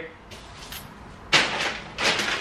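Low room sound, then about a second and a half in a single sudden clatter that fades within half a second, from someone working at a kitchen counter.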